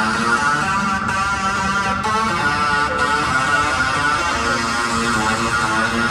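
Music with guitar playing continuously.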